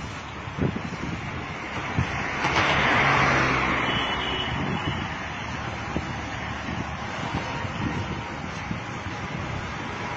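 Street traffic noise with wind on the phone microphone, swelling loudest around three seconds in, with a couple of faint knocks early on.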